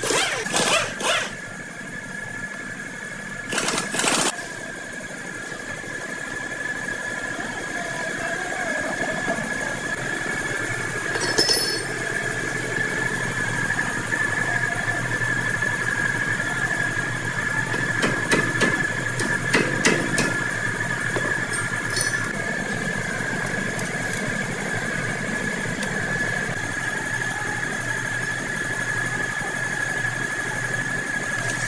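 Pneumatic impact wrench rattling on a car's wheel lug nuts in two short bursts, one at the start and one about four seconds in. After that a steady machine hum with a high whine runs on, with a few metallic clinks of tools on the brake hub.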